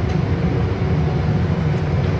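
Steady low rumble of a ship-bridge simulator's engine sound, with the simulated vessel running at full speed.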